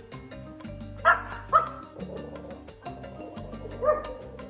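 A small dog yipping twice in quick succession, about a second in and half a second later, with a shorter yip near the end, over background music.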